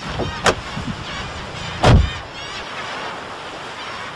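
Logo sound run through warbling audio effects: sweeping whooshes about half a second in and again near two seconds, the second with a low thud, then a softer, wavering stretch.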